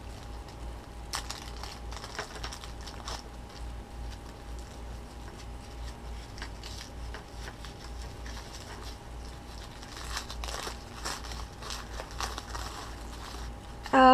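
Crinkly plastic wrapping being handled and picked open by hand, in scattered light crackles and rustles that thicken about ten seconds in.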